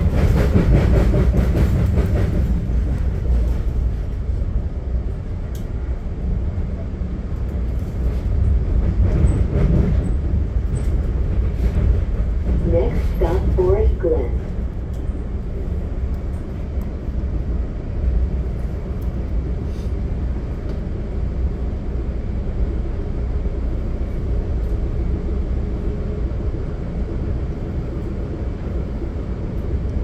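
Steady low rumble of a Budd gallery passenger coach riding over the rails at speed, a little louder for the first couple of seconds.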